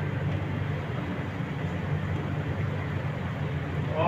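Steady low hum with a soft hiss over it, the running background of a kitchen at the stove; no stirring knocks or other distinct events stand out.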